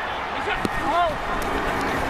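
Field audio of a televised football game: steady stadium noise, with a short shouted call from the field about a second in as the offense gets set for the snap.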